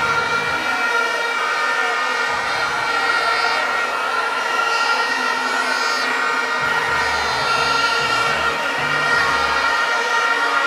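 Celebrating street crowd, with many steady blaring tones held at once over the crowd noise and a low rumble that cuts in and out.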